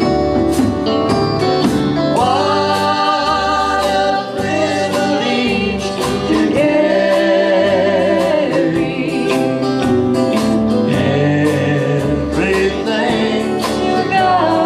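Live country-gospel band music: electric guitar over a bass line and a steady beat, with long, wavering held notes.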